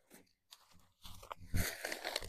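Irregular crunching and rustling that starts about a second in, with one louder crunch just past the middle.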